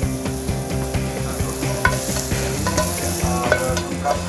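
Sautéed wild mushrooms sizzling in a hot frying pan as they are moved out onto a plate, with a steady hiss and a few light clicks against the pan.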